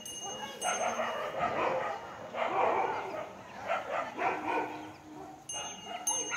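A dog barking in several separate bursts.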